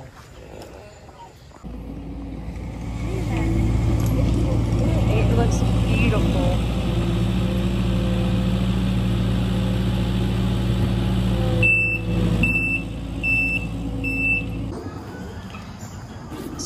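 Compact track loader's diesel engine running steadily. It starts about two seconds in and stops suddenly near the end, and just before it stops the loader's backup alarm beeps four times.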